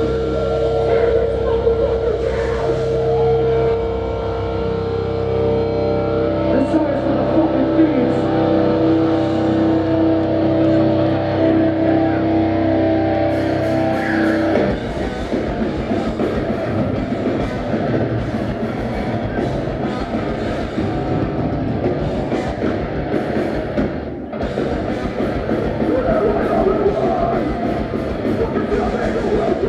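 A melodic hardcore band playing live in a concert hall, recorded from the crowd. It opens with held, ringing guitar chords, and about halfway through the full band comes in with drums and heavy distorted guitars.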